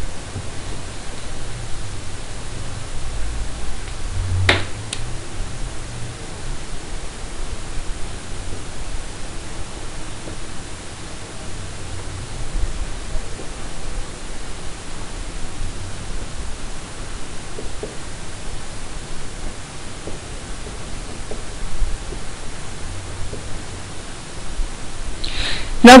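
Steady background hiss with a low rumble, and one sharp click about four and a half seconds in.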